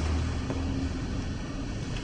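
Steady low rumble with an even hiss: background noise of a large hall.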